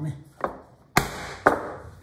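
Three sharp knocks about half a second apart, the middle one loudest: a metal holdfast being struck to tighten it down and clamp the workpiece to the bench.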